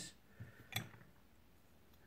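Mostly quiet, with two faint small clicks in the first second as an aluminium MTB flat pedal with a titanium axle is handled.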